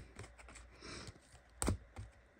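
Rigid plastic card holders clicking and rustling against each other as a stack of cards is shuffled by hand, with a few light clicks and one sharper click about one and a half seconds in.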